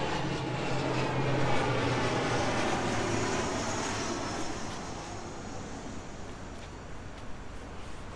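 An aircraft passing overhead: its engine drone swells during the first couple of seconds, then slowly fades away.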